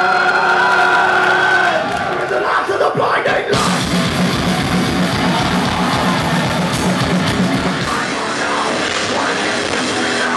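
Live heavy metal band playing loud through a club PA: a held chord rings for about two seconds, then the full band comes in with a fast, pounding riff.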